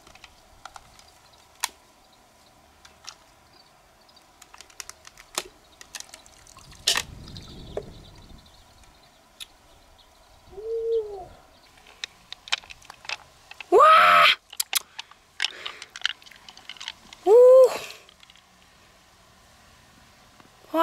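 Light clicks and taps of a mussel shell being handled and pried open by hand, then two short, loud wordless exclamations from a woman, one about two-thirds of the way through and one near the end.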